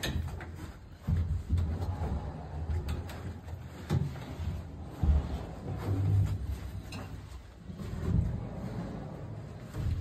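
Plywood stall doors and walls bumped and pushed by hand, giving a few dull wooden knocks over low rumbling footsteps on wood-shaving bedding.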